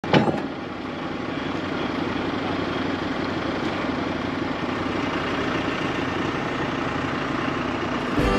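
An engine running steadily at an even idle, with a short knock right at the start, as a heavy lumber slab is lifted off the sawmill.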